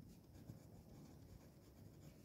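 Faint scratching of a pencil lettering words on drawing paper.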